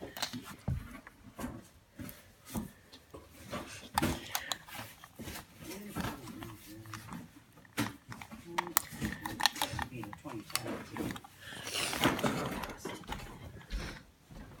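Indistinct wordless voice sounds among scattered clicks and knocks, with a burst of rustling near the end.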